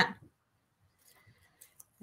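Faint small clicks and crinkles of a strip of thin aluminium metal tape being handled and pressed down onto a paper tag.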